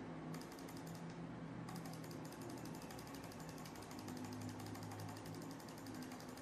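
Computer mouse button clicked rapidly and repeatedly, several faint clicks a second, with a short pause about a second in. The clicks are on the Grow Font button, each one enlarging the text. A low steady hum runs underneath.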